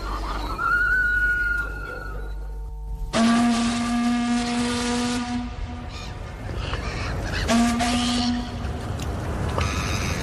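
Steam whistle blowing with a hiss of steam: a long blast of about two seconds, then a shorter blast a couple of seconds later. Before the blasts, a thin high whistle rises and holds briefly. Music comes in near the end.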